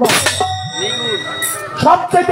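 A metallic clang struck once at the start, ringing on in steady high tones for about a second and a half.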